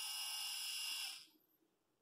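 Small geared DC motor of a Happy Henhouse CH1K-T automatic chicken coop door controller whining steadily as it winds the door line back up, cutting off suddenly about a second in as it reaches its starting (up) position and stops.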